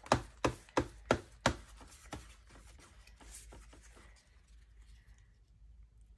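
Hands handling craft supplies on a tabletop: a quick run of sharp, light taps and knocks, about seven in two seconds, then faint rustling of paper.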